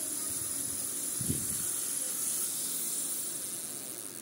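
Tactics Enjoy spinning reel being cranked by hand: its gears and rotor give a steady whirring hiss, fading slightly near the end.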